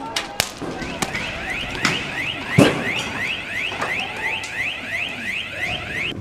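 An electronic alarm sounding a fast, repeating rising whoop, about five sweeps a second, starting about a second in, over street noise. A few sharp bangs cut through it, the loudest about two and a half seconds in.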